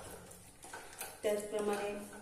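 A spoon stirring a thick amla-and-jaggery mixture in a stainless steel pot, with a sharp scrape or click against the metal about a second in. A woman's voice comes in over the stirring in the second half.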